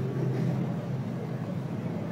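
Steady low hum over a faint, even background noise.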